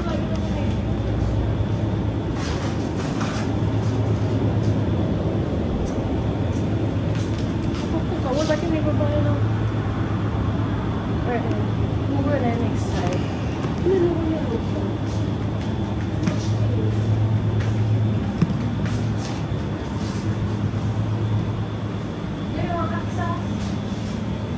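Supermarket room sound: a steady low hum from refrigerated display cases and air conditioning, with faint voices now and then.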